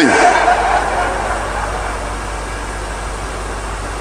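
Congregation reacting with crowd noise, loudest at first and settling to a steady level after about two seconds.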